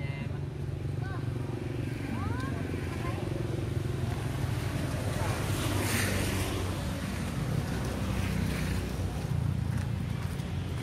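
Steady low rumble of a running motor, with a few short rising-and-falling squeaks from a young monkey in the first three seconds and a brief hiss about six seconds in.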